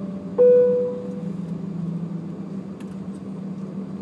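Steady low hum of a jet airliner's cabin as it rolls along the runway after landing. About half a second in, a single clear tone rings out and fades away over about a second.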